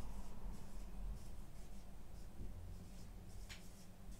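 Dry-wipe marker writing a word on a whiteboard: a run of short scratchy strokes of the felt tip on the board, with a sharp click near the end.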